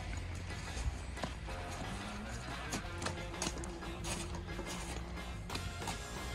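Snow shovel blade scraping and knocking on a snowy driveway in irregular strokes, over quiet background music.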